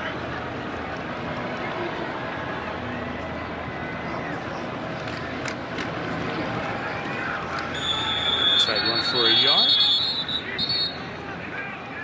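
Steady stadium crowd noise through a running play. Near the end, several officials' whistles blow shrill, steady notes for about three seconds, the loudest sound, as the play is whistled dead after the tackle.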